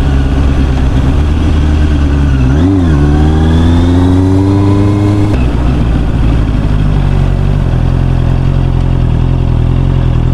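Motorcycle engine running under the rider. Its pitch dips briefly near three seconds, then climbs steadily as it accelerates, drops abruptly a little past five seconds, and runs steady at a lower pitch after that.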